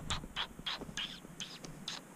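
Footsteps crunching on dry, brushy ground, a short crunch about three times a second.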